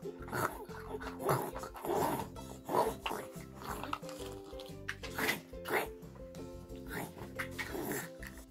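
Short pig-like grunts from a child imitating a pig eating greedily, coming in irregular bursts over light background music.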